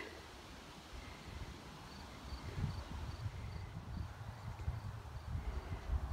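Quiet outdoor ambience: a low rumble with scattered soft thumps, and a faint, high chirp repeating evenly about two or three times a second from about two seconds in.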